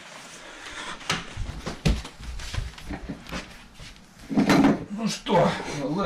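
Knocks and clatter of a jacket and hangers being put on a coat rack, with a few heavier thumps, then a man's voice speaking in the second half.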